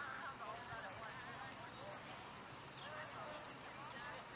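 Faint, indistinct voices talking in the background, no words clear.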